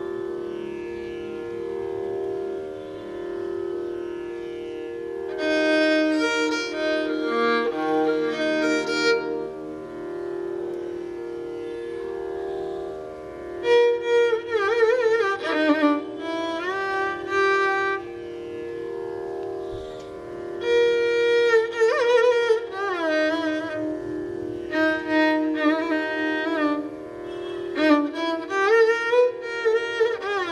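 Carnatic violin playing phrases in raga Pantuvarali, with sliding, oscillating ornaments and pauses between phrases, over a steady drone. The percussion does not play.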